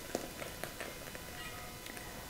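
Faint, soft wet plops and scattered light taps as cooked strawberry pulp and syrup are poured from a saucepan into a metal mesh strainer over a bowl.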